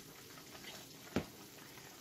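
Faint steady sizzling of sliced zucchini, onion and leek cooking in oil in a frying pan, with one sharp knock a little after a second in.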